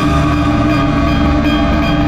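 Dramatic background score: a sustained droning chord over a pulsing low bass.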